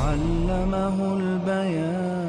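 Chanted vocal music: a voice holds one long, steady note that steps down slightly in pitch near the end.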